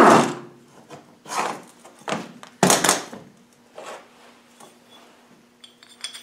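A pneumatic impact gun's burst, run in reverse, dies away at the very start. A few separate knocks and scrapes of metal tools being handled on the gearbox and steel workbench follow, the sharpest a little under three seconds in, with a faint steady hum behind them from about halfway.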